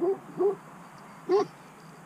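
A dog giving short, high barks: two quick ones at the start and one more just past halfway.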